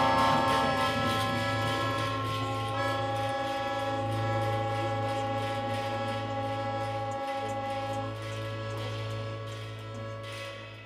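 Small acoustic jazz group, trumpet and upright bass among them, holding long sustained notes as a chord that slowly fades away, some notes dropping out about eight seconds in, like the closing chord of a tune.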